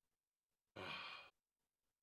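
A man sighs once, a short breathy exhale about a second in; otherwise near silence.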